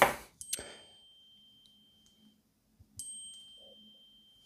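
Two faint, high electronic dings about two and a half seconds apart. Each starts with a small click and holds a steady ringing tone for a second or more before cutting off: a device alert chime.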